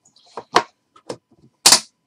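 Metal briefcase of a Panini Flawless box being shut: a few sharp clicks and knocks from the lid and hardware, the loudest near the end as the lid comes down on the case.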